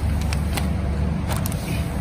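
Powder packing machinery running with a steady low hum. Over it come crinkles and a couple of sharp clicks as a filled plastic powder bag is handled onto a weighing scale.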